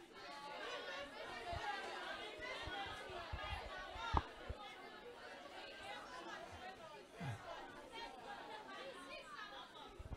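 Faint murmur of many voices talking at once, a class chattering quietly, with a single sharp knock about four seconds in.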